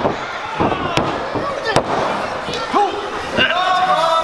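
Spectators shouting and calling out at a live professional wrestling match in a small arena. Two sharp slaps or claps come about one and nearly two seconds in, and a longer held shout rises near the end.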